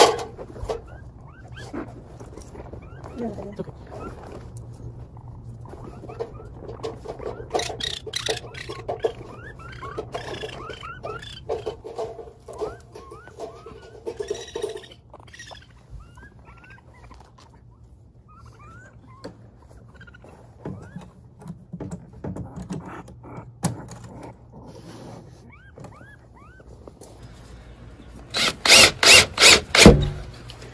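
Baby raccoon kits giving small high squeaking chirps now and then as they are handled out of a bag into a box. Near the end, a DeWalt 20V cordless drill drives a screw in several short loud bursts.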